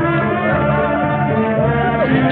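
Orchestral film score with brass, playing loudly and without a break.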